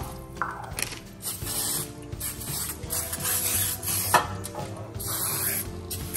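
Aerosol can of butter-flavoured nonstick cooking spray hissing in several short bursts as it coats a metal baking pan.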